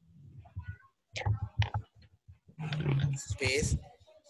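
Indistinct voice sounds in short spurts, with no clear words, the longest near the end.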